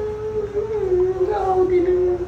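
A young woman crying aloud in one long, drawn-out wail that sinks slightly in pitch.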